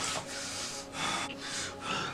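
A man breathing heavily in ragged, noisy gasps, three quick breaths in two seconds.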